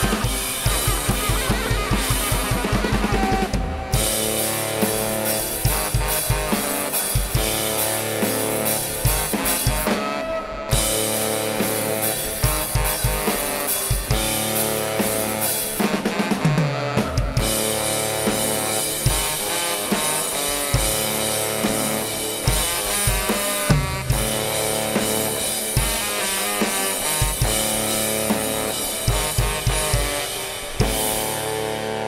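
Live band playing: a drum kit with a fast kick-drum pattern in the first few seconds under two saxophones, with a couple of brief breaks in the texture about four and ten seconds in.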